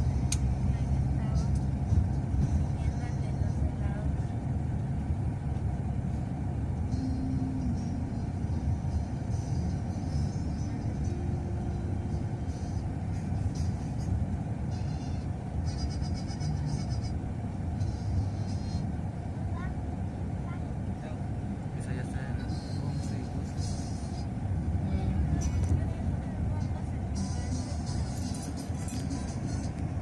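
Steady rumble of road and engine noise inside a moving vehicle, with music and indistinct voices in the background.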